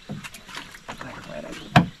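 Scattered knocks and clunks on a small wooden boat as people shift about and handle a rope, with one sharp, loud knock near the end.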